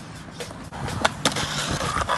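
Skateboard wheels rolling on concrete, with a few sharp clacks about a second in as the board is popped up onto a concrete ledge, then a rising scrape as it grinds along the ledge.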